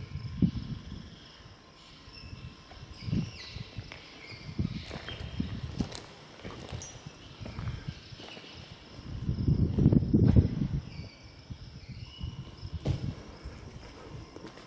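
Slow footsteps scuffing on a gritty concrete floor, with small birds chirping now and then. A louder low rumble comes about nine to ten seconds in.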